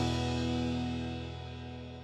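Final chord of a rock song ringing out and fading away after the last hit, with the band's guitar sustaining as it dies down.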